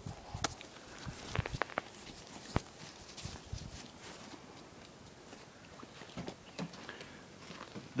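Footsteps on a dirt road and the rubbing of a handheld phone: irregular light crunches and clicks, most of them in the first three seconds, then sparser and quieter.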